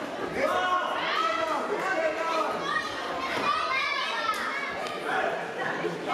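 Children's and spectators' voices calling and shouting over one another in a large sports hall, with a single sharp smack about four seconds in.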